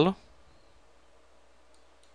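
Faint steady background hiss and low hum, with one faint computer mouse click near the end as the restart is confirmed.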